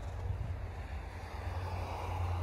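John Deere TRS24 snowblower's engine idling with a steady low drone.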